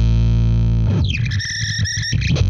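Mustang bass played through Dwarfcraft Ghost Fax and Eau Claire Thunder pedals: a loud, heavily distorted low drone. About a second in it breaks off into high squealing tones: one glides down in pitch, then two steady high whines ring on.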